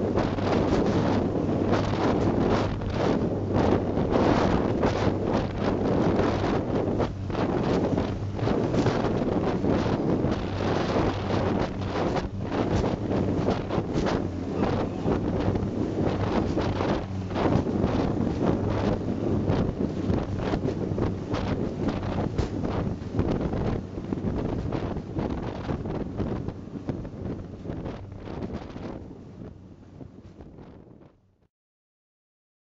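Vintage Albatross runabout speedboat running flat out, its Coventry Climax engine with twin Weber carburettors humming steadily under heavy wind buffeting on the microphone and the hull slamming through chop. The din dies away over the last few seconds.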